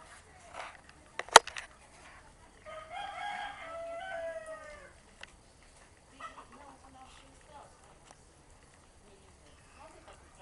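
A loud, sharp knock about a second in, then a pitched animal call lasting about two seconds, made of a few short parts and ending in a longer note that falls in pitch.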